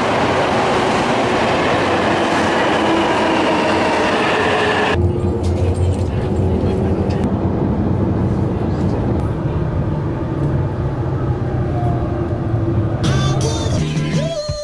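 Railway sounds of a Narita Express train: first a loud, even, hissing noise with faint steady tones beside the train at an underground platform. About five seconds in, an abrupt change to the deep, steady rumble of the train running, heard from inside the carriage, until a cut to other sounds near the end.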